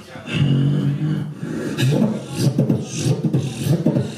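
Live solo beatboxing: a held low vocal bass tone for about the first second, then a fast rhythm of mouth-made drum sounds with hissing high hits.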